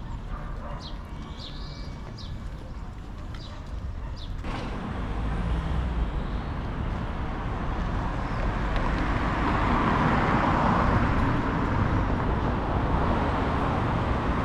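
Small birds chirping repeatedly over a low steady hum. After an abrupt change about four seconds in, a louder rushing street-traffic noise swells, loudest near the middle, as of a vehicle going by.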